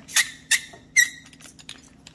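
Three short squeaks in the first second as the Hypertherm machine torch's threaded outer sleeve is twisted loose by hand, the sleeve rubbing against the torch body.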